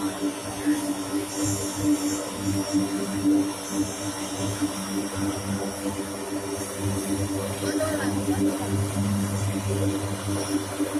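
Lockheed C-130J Hercules turboprop engines and propellers running as the aircraft taxis, a steady hum with a low, slightly pulsing undertone.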